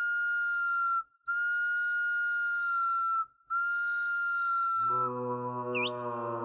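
A cartoon chick's sound effect: three long, high, steady whistle tones with short breaks between them, each falling slightly in pitch, given as its try at the cow's special noise. About five seconds in, a low, steady droning tone begins.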